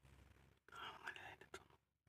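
A quiet, hushed voice for about a second in the middle, over a faint low hum.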